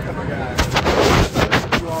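Handling noise on a phone's microphone as the phone is swung around: a burst of loud rubbing and several sharp knocks, starting about half a second in and ending shortly before the end.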